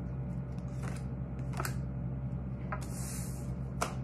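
A deck of tarot cards being shuffled by hand: a few brief card snaps and a short sliding rustle near the end, over a low steady hum.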